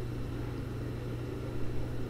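A steady low hum with faint background hiss, in a pause between spoken sentences.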